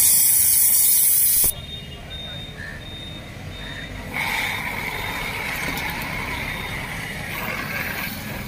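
Pressurised gas hissing loudly from a nozzle, cutting off abruptly about a second and a half in. A quieter, steady hiss starts again about four seconds in.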